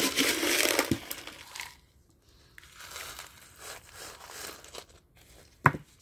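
Crunchy, crinkling handling noise of small decorative pebbles and a plastic plant pot, loudest in the first second and a half, then softer rustles. A single sharp knock comes near the end as the pot is taken in hand.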